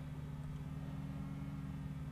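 Low steady hum of room tone, a few fixed low tones under a faint hiss, from electrical equipment running in the room.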